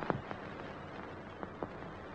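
Faint steady hiss of an old film soundtrack with a few soft clicks scattered through it.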